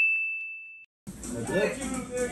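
A single bright ding sound effect, one bell-like tone with a few fainter higher overtones, ringing out and fading away, then cut to dead silence. Room noise with voices comes in about a second in.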